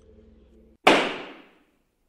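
A single sharp impact sound effect sets in just under a second in, right after a faint low hum cuts off. It fades away in under a second, leaving silence.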